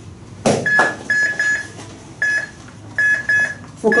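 Short, high-pitched electronic beeps from a Philips defibrillator-monitor, coming in irregular groups of one to three while the paddles are held on a CPR manikin for a rhythm check. A single knock sounds just before the first beep.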